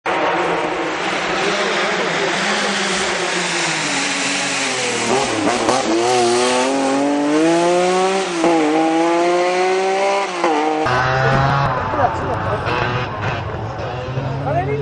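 A racing engine accelerating hard through the gears, its pitch climbing and then dropping back at each shift, three times in a row. A little before the end it cuts suddenly to a lower, steady engine hum.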